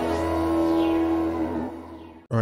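Electronic intro music under the channel's logo animation: a held chord over a steady bass, with faint falling sweeps high up, fading out near the end.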